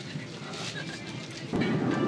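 Steady background noise inside an airliner cabin, which gets suddenly louder about one and a half seconds in.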